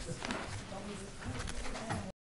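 Faint, indistinct chatter of a few people in a meeting room, with a few light knocks and handling noises.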